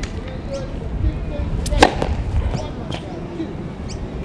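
Tennis racket striking the ball on a serve: one sharp, loud crack a little under two seconds in, with a few fainter knocks around it.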